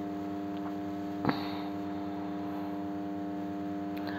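A steady low electrical-sounding hum, with a single short click about a second in.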